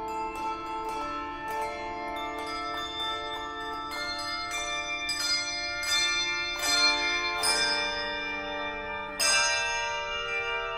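A handbell choir playing a piece: struck bell chords ring on and overlap, with fresh, louder chords struck about two-thirds of the way through and again near the end.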